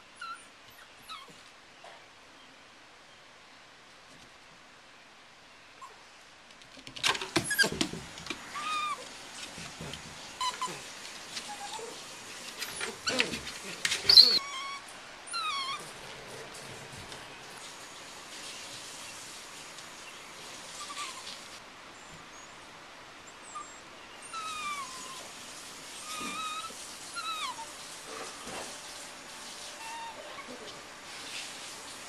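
Nine-week-old Welsh Terrier puppies playing: short high whines and yips with scuffling knocks. It is quiet for the first several seconds, and the knocks are loudest about seven and fourteen seconds in.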